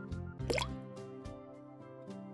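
A single short cartoon water 'plop' effect, a quick rising bloop, about half a second in as the rubber duck goes into the water, over quiet steady background music.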